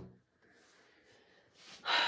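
A deck of tarot cards knocked down onto a tabletop right at the start, then quiet, and a short in-breath near the end.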